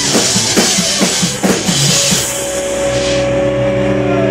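Glam metal band playing live: a quick drum fill whose last hits fall in pitch down the toms, then about halfway through, a chord from the guitars and bass is held and rings out while the cymbal wash fades.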